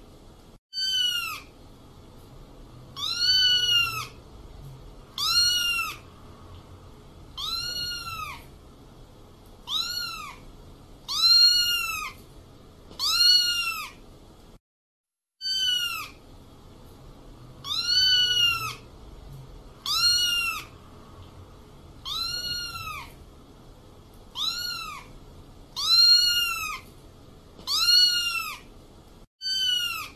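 Young kitten mewing over and over, high-pitched, about one mew every two seconds, each rising and then falling in pitch. The calls stop briefly about halfway through, then carry on.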